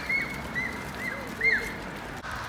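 A bird's short rising-and-falling chirps, three in two seconds, over a steady background hiss.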